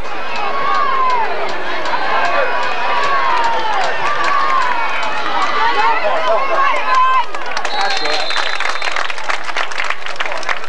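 Football crowd in the stands shouting and cheering during a play, many voices overlapping. About seven and a half seconds in the shouting turns to clapping, and a long high referee's whistle blows the play dead.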